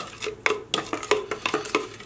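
A metal spoon stirring a watery wood-ash glaze slurry in a large glass jar, with irregular clinks and scrapes of the spoon against the glass.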